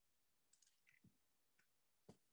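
Near silence with a few faint, scattered clicks from about half a second to a second and a half in.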